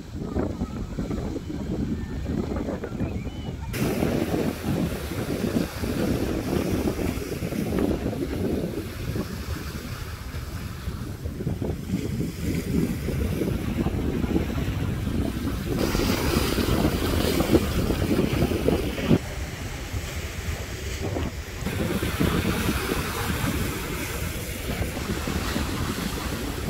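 Sea waves washing against a rock breakwater, with wind buffeting the microphone.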